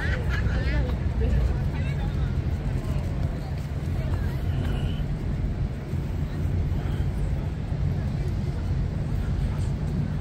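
City street ambience: a steady low rumble of road traffic, with voices of passers-by talking, most clearly in the first couple of seconds.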